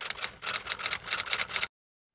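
Typewriter keystroke sound effect: a quick run of sharp key clicks, several a second, one for each letter of a title typing itself out. It cuts off suddenly near the end.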